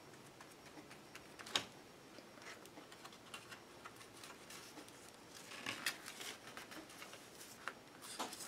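Faint scratching and paper rustling as a flat brush spreads glue over book-page paper folded around a canvas board's edges, with scattered light taps, one sharper tap about a second and a half in.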